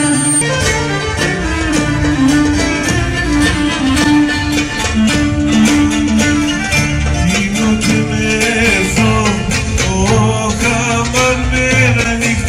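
Asia Minor Greek folk dance music: bowed and plucked string instruments playing a melody over a steady beat.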